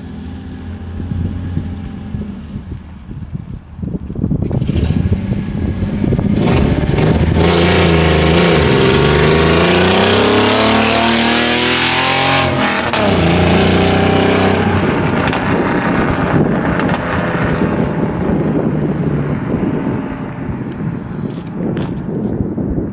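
BMW E46 330ci's 3.0-litre M54 inline-six, on aftermarket headers and catless mid pipes with no tune, accelerating hard past and pulling away. The engine note climbs in pitch and drops sharply about halfway through, then fades as the car drives off; definitely loud.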